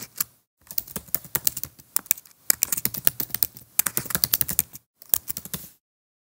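Computer keyboard keys clicking as a password is typed, in quick runs of keystrokes with short pauses between, stopping shortly before the end.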